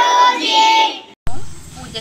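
A group of children singing together in unison, ending on a held note about a second in. It then cuts off abruptly and gives way to a steady low hum with faint voices.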